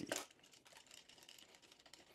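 Near silence with faint, scattered light clicks and rustles: a GNSS antenna mount and its cord being handled and fitted onto a drone arm.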